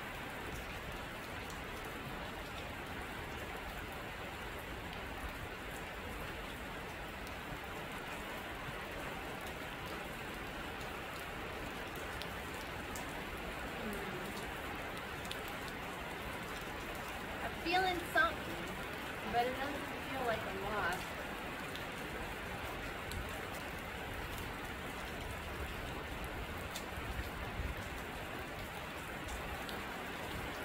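Heavy rain beating steadily on a sheet-metal gazebo roof.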